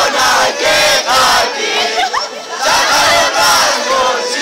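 A group of teenagers singing loudly together in short, shouted phrases, with one boy's voice to the fore.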